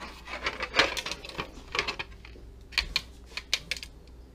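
Irregular clicks and clinks as plastic motorcycle fairing pieces are handled, a metal chain-link bracelet knocking against them, with some rustling of plastic wrapping.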